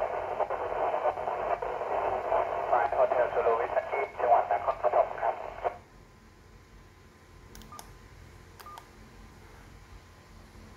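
A voice received over a two-metre FM amateur transceiver's speaker, thin and band-limited, cutting off abruptly a little over halfway through as the other station stops transmitting and the squelch closes. Faint hiss and a few small clicks follow.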